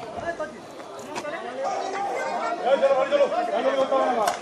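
Several people talking at once: overlapping chatter that grows louder in the second half.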